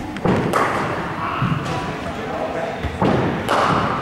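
Cricket ball striking a bat in indoor nets: a sharp knock about half a second in, and another pair of knocks near the end, each with a short echo in the hall.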